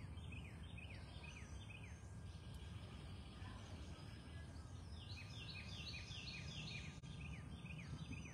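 A songbird singing: two runs of quick, repeated downward-slurred whistled notes, one just after the start and a longer one about five seconds in, over a faint low background rumble.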